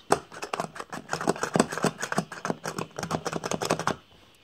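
Rapid, irregular plastic clicking, several clicks a second, as the Hello Kitty figure on a McDonald's Hello Kitty milkshake toy is pressed and its mechanism worked.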